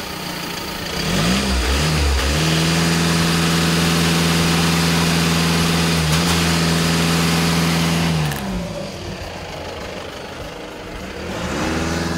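2015 VW Golf TDI's 2.0-litre turbodiesel four-cylinder, heard at the exhaust tips. It is blipped and then revved from idle and held steady at its no-load limit of about 2,500 RPM for some six seconds. It then drops back to idle and starts to rise again near the end.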